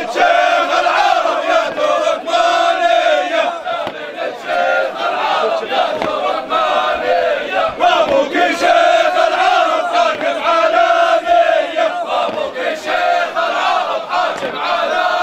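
A crowd of men chanting a Jordanian wedding song together in unison, loud and continuous, in short repeated phrases.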